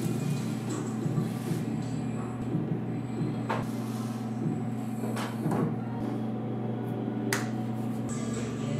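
A few light knocks and clatters as canvas paintings are handled and set down on wooden tables, over a steady low hum.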